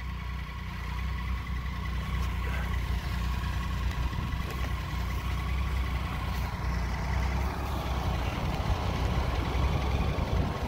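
Motorcycle engine idling steadily, with a low, even rumble.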